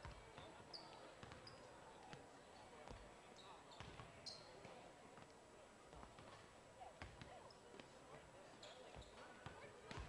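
Faint gym sound of basketballs bouncing on a hardwood court, irregular thuds, with a few short high sneaker squeaks over the low chatter of a crowd in the stands.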